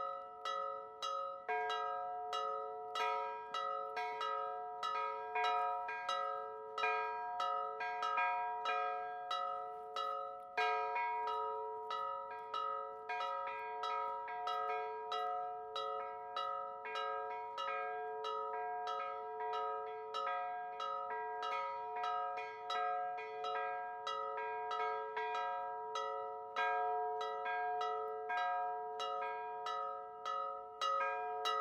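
Four church bells, three of them cast in 1932, ringing a festive solemn peal (mota solenni). Rapid, overlapping strikes come several a second over the bells' steady ringing tones.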